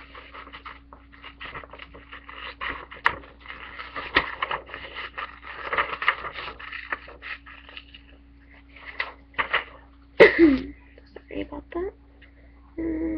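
Scissors cutting scrapbook paper, with the paper rustling: a long run of irregular crisp snips and crackles. About ten seconds in, a brief voice-like sound is the loudest moment, and a faint steady hum lies underneath.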